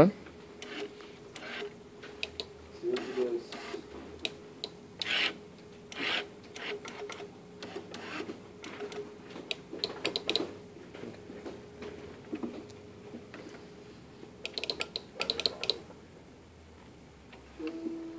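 Small electric motor driving a carriage along a steel guide rod on a homemade gantry rig: a steady motor hum that stops about three quarters of the way through, with irregular clicks and knocks from the mechanism.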